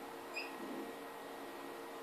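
Faint steady room hum, with a dry-erase marker squeaking briefly on a whiteboard about a third of a second in as a line of a rectangle is drawn.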